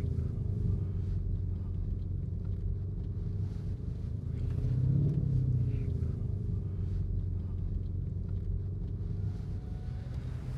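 Lamborghini Urus twin-turbo V8 heard from inside the cabin, running at low load with a steady low hum after a drag run. Its note rises slightly about halfway through, then settles back.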